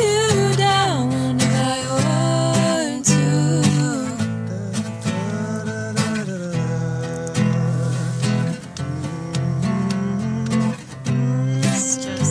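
Acoustic guitar playing an instrumental passage of a song, with a held sung note wavering and fading in the first second or so.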